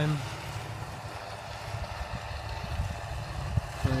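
Distant John Deere 7530 tractor, a six-cylinder diesel, running steadily while it drives a Teagle topper cutting rushes, heard as a low, even drone.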